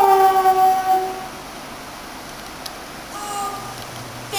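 A woman's singing voice holds one long note that sinks slightly in pitch and ends about a second in. A shorter, fainter note follows near three seconds.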